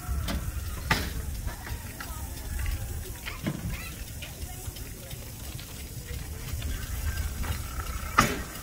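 Wind buffeting a phone microphone as a low, uneven rumble, with a few short knocks from the phone being handled.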